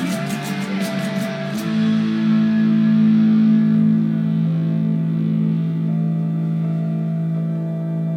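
Electric guitar played through effects: strummed chords with sharp ticks until about a second and a half in, then chords held and left ringing.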